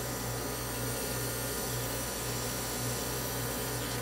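Airbrush unit running: a steady compressor hum with the even hiss of the airbrush spraying a light mist of food colour.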